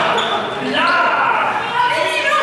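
Several voices calling and shouting at once in a large, echoing sports hall, with running footsteps on the hall floor among them.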